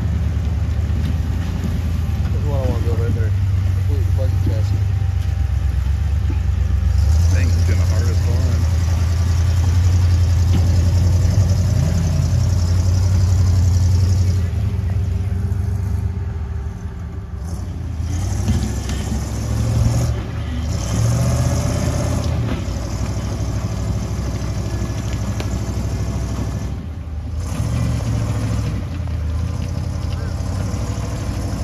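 Rock crawler buggy's engine running under load as it climbs boulder ledges, loudest for several seconds in the first half, then easing off and coming back in a few short revs.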